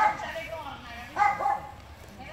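Dogs barking and yipping in rough play: one sharp bark at the start, then two more close together about a second in.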